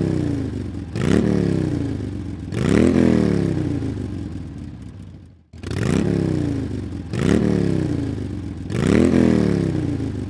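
Motor scooter engine revved in repeated blips: each time the pitch jumps up and then winds down over a second or so. Three revs, a short break, then three more.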